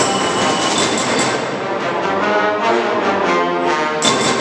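Concert band playing loud, brass-heavy sustained chords, with a quick run of percussive strokes in the second half.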